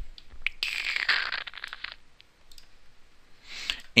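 A few sharp clicks, then about a second of dense, fast clattering from a computer keyboard and mouse while a query is selected and run, followed by a quieter stretch.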